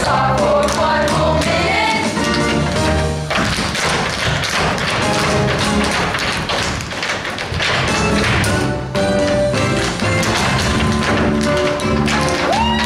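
A cast tap-dancing in unison on a wooden stage, a quick run of taps and stamps over loud band music for a musical number.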